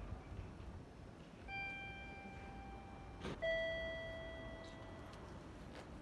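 Two-note electronic ding-dong chime, a higher note and then a louder, lower one that rings and fades. It is the kind of guide chime sounded at a Japanese railway station entrance.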